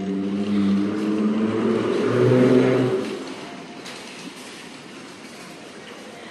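A motor running with a low hum whose pitch shifts in steps, fading out about three seconds in.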